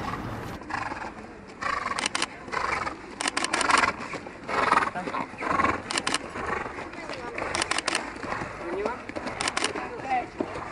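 Racehorses walking, hooves clip-clopping on a path in small clusters of sharp knocks, with voices around them.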